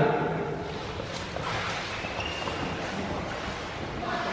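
Scuffling on a concrete floor: a body and clothing dragged along it, with shoes scraping and shuffling, a steady rustling scrape with a few faint knocks.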